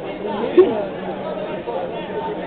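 Overlapping voices of spectators talking and calling out, with one brief louder voice about half a second in.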